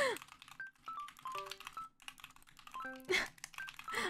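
Typing on a computer keyboard, a run of quick key clicks, over sparse soft background music notes. A brief falling vocal sound comes at the very start.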